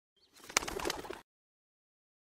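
Short animation sound effect, about a second long: a sharp click followed by a quick fluttering rattle that cuts off suddenly.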